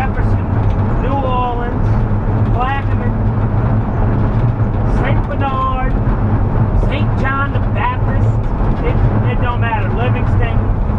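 Steady low drone of a full-size van's engine and tyres heard from inside the cab while it cruises at highway speed, with a man's voice speaking in short bursts over it.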